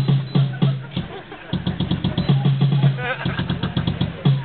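Piano music with hammered low bass notes in a quick, driving rhythm, including a fast run of repeated notes in the middle.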